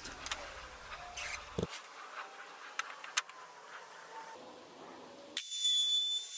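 A quiet stretch with a few faint knocks. Near the end a DeWalt compact router cuts in, running with a steady high whine as it rounds over the sharp edges of a pine leg.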